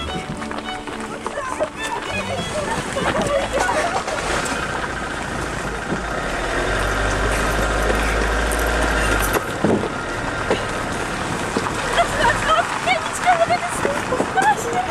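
Voices calling out over the low engine rumble of a van being push-started, the rumble strongest in the middle and dropping away near the end.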